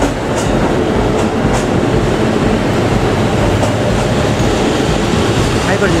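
JR Central KiHa 85 series diesel express train running into a station platform: a steady rumble of diesel engines and wheels on the rails.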